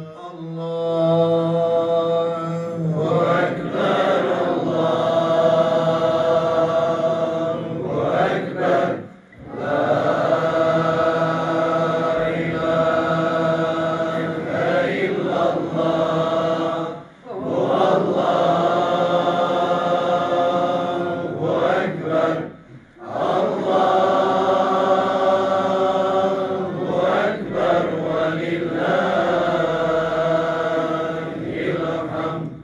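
A man's solo Islamic religious chant sung through a microphone in long, drawn-out melodic phrases. There are short breaths between phrases, at about a third of the way in, past the middle, and a little after.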